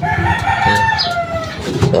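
Rooster crowing: one long crow lasting about a second and a half, falling in pitch at the end.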